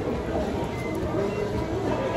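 Steady low background rumble of a busy indoor dining area, with faint distant voices.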